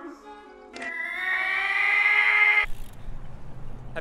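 A single long, pitched wail, rising slightly, sounded as an alarm on a film soundtrack. It lasts about two seconds and cuts off suddenly.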